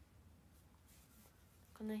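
Quiet room tone with a faint papery rustle from a handheld spiral sketchbook being moved, then a woman starts speaking near the end.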